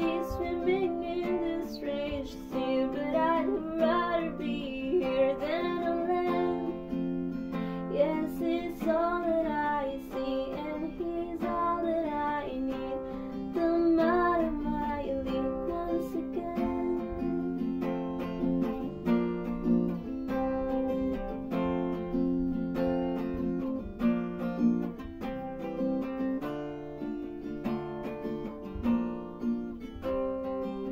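Acoustic guitar strumming chords steadily, with a woman's voice carrying a wavering melody over it for about the first half; after that the guitar goes on alone.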